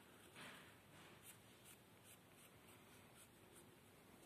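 Faint scratching of a pen or pencil tip drawing strokes on paper: one slightly louder scratch about half a second in, then a string of short, light strokes.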